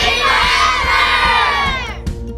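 A group of children shouting together in one long cheer, many voices at once, sliding down in pitch as it dies away near the end.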